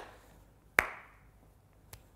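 A woman's hand claps in the routine's single-and-double pattern: three sharp claps about a second apart, each with a short echo.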